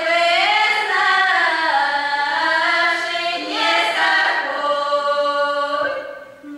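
A children's folk vocal ensemble of girls singing a Russian folk song a cappella, several voices together on long, held, sliding notes, with a new phrase starting about three and a half seconds in.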